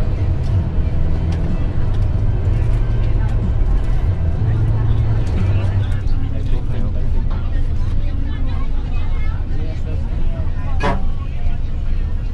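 Steady low rumble of engine and road noise inside a moving bus, with faint voices talking over it and a sharp click near the end.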